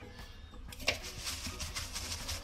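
Paper towel rubbing and patting raw lionfish dry in a glass bowl, with soft rustling strokes. A single sharp click a little under a second in.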